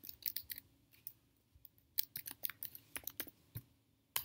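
Computer keyboard typing: a short run of keystrokes, a pause of over a second, then a longer run of keystrokes.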